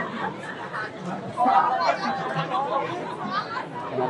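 Speech: people talking in Khmer.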